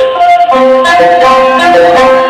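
Very loud music from a DJ sound system: a repeating melody of short, clear notes that step up and down, with the bass dropped out.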